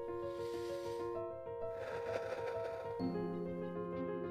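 Soft background music of long held, overlapping notes, with a new, fuller chord coming in about three seconds in.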